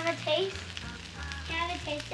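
Fried rice sizzling on a hot flat-top griddle.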